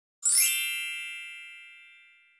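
Chime sound effect of a logo intro: a quick shimmering sweep upward opens into a ringing cluster of bell-like tones that fades away slowly over about two seconds.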